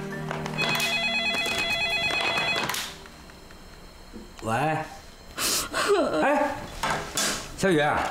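Corded landline telephone ringing once with a warbling electronic ring lasting about two seconds, then answered.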